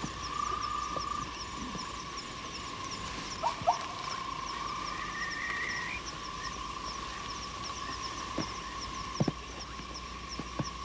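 Night chorus of frogs and insects: a steady trilling drone with short high chirps repeating a few times a second. A couple of sharp clicks stand out about three and a half seconds in, and another comes near the end.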